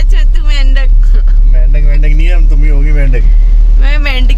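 A voice talking inside a moving car, over the steady low rumble of the car cabin on the road.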